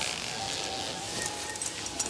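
Steady wind noise with a faint thin tone that rises slightly in pitch.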